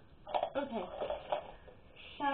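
A girl's voice: a brief, unclear utterance with falling pitch in the first second and a half.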